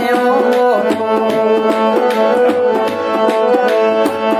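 Instrumental interlude of a Gojri folk song: tabla strokes keeping a steady rhythm under sustained harmonium notes, with no singing.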